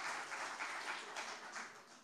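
Light audience applause that fades away toward the end.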